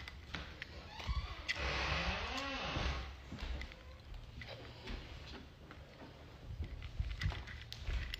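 Quiet stretch of phone livestream audio with faint rustling and small clicks of the phone being handled, and a brief faint vocal murmur about two seconds in.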